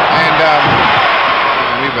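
Arena crowd cheering steadily during a basketball game, a dense wash of many voices, heard through an old, narrow-band TV broadcast soundtrack.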